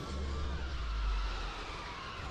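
Hovercraft engine rumbling low in a film soundtrack, swelling to a peak about a second in and then easing off.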